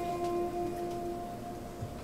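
A single acoustic guitar note ringing out and slowly fading, plucked while the guitar is being tuned; its lower pitch dies away first, and a higher ring lasts until near the end.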